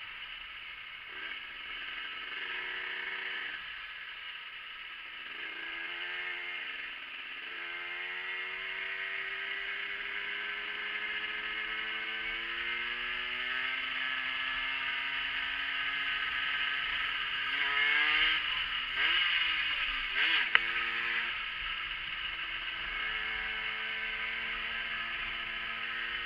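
Yamaha motorcycle engine running on the road, its note climbing slowly as the bike gathers speed, then a few quick rises and drops in pitch later on, with one sharp click among them. A steady rush of wind noise runs underneath.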